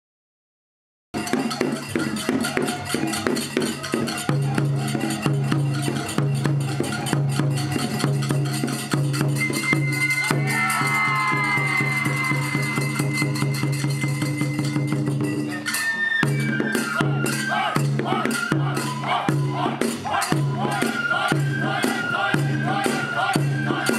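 Daikagura festival music for a lion dance, starting suddenly about a second in. A taiko drum keeps a steady beat under quick jingling percussion, with a high held melody over it.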